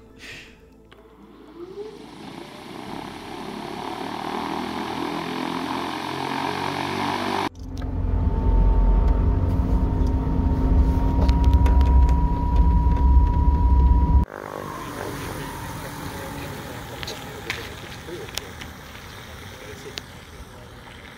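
Pipistrel Velis Electro electric aircraft, its electric motor and propeller running. A noise grows louder over the first seven seconds or so. It gives way suddenly to a loud rumble heard inside the small cabin, with a steady whine slowly creeping up in pitch, which cuts off abruptly to a much quieter, even sound for the last few seconds.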